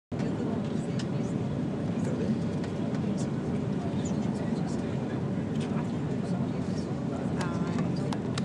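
Steady low rumble of a passenger train's cabin while the train is under way, with faint scattered clicks and a brief voice near the end.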